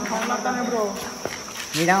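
Crickets chirring, a steady high-pitched drone, behind men's voices.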